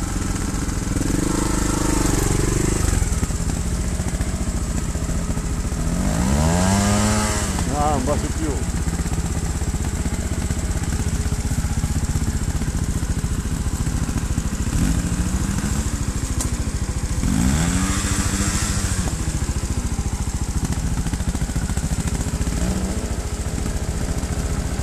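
Trials motorcycle engines: a steady low engine running underneath, with revs swelling up and dropping back several times as a bike works up a climb. The biggest swells come about seven seconds in and again near eighteen seconds.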